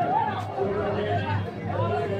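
A large street crowd talking and calling out over one another, many voices at once, with music underneath.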